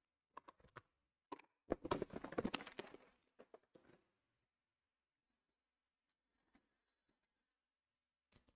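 Clear plastic parts organizer box being handled and moved aside: a few light clicks, then about a second of plastic knocks and rattles that trail off into a few ticks.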